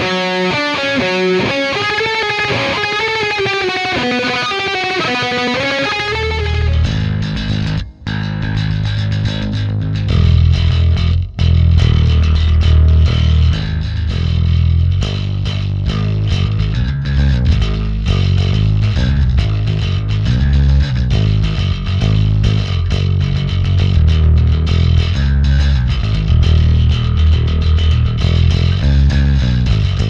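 Harley Benton SC-1000 electric guitar playing a melodic picked line, then about six and a half seconds in a Harley Benton TB-70 bass guitar takes over with a low, driving riff, broken by two short gaps.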